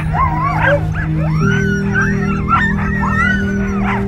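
A pack of sled dogs yelping, whining and howling, many high calls overlapping and sliding up and down in pitch, as they are harnessed. Background music with low held notes that shift about a second and a half in.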